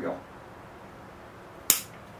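A single sharp snip of a bonsai pruning tool cutting through a Ficus branch, about a second and a half in.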